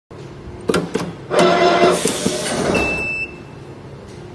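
PTFE tape wrapping machine running one wrapping cycle on a brass valve's thread: two sharp clicks as the fitting goes into the port, then about two seconds of loud motor and mechanism noise with a brief high tone near the end, cutting off suddenly.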